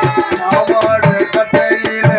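Live accompaniment for a Tamil stage drama: an electronic keyboard playing a melody over quick, regular hand-drum strokes.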